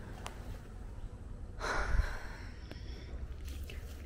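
A person's single sharp exhale close to the microphone about halfway through, over a low steady rumble, with a couple of faint clicks.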